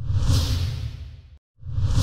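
Whoosh sound effect with a low rumble under it, fading away over about a second and a half. After a brief silence a second whoosh swells up near the end.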